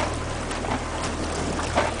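Fishing boat's engine running steadily, a low hum under wind and water noise.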